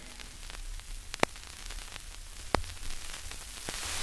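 Turntable stylus riding the run-out groove of a 45 rpm vinyl single after the song has ended: steady surface hiss with a sharp click about every second and a third, once per turn of the record.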